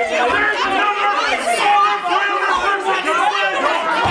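Several people talking loudly over one another at the same time, a jumble of overlapping voices.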